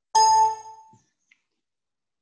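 A computer alert chime: one bright ding that starts sharply and rings out within about a second.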